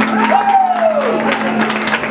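A live indie band plays a held low note with a gliding pitched sound over it, the close of the song, while the crowd cheers and claps.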